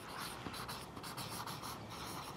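A marker pen writing on poster paper: a quick series of short scratchy strokes as letters are drawn.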